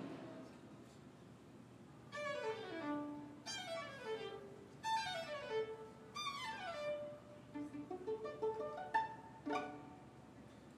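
Violin played alone: four quick falling runs of notes, then a few shorter separate notes near the end.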